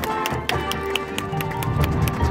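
High school marching band playing its field show: held brass chords with many quick, sharp percussion strikes over them.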